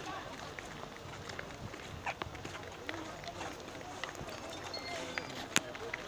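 Footsteps of a group walking on a paved road, with indistinct chatter among the walkers; a sharp click stands out near the end.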